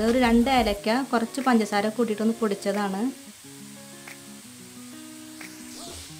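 A voice for about the first three seconds, then quiet background music of held notes, with faint sizzling of grated coconut frying in a pan underneath.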